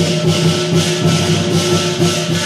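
Chinese lion dance percussion: cymbals clashing about twice a second over a steady metallic ringing.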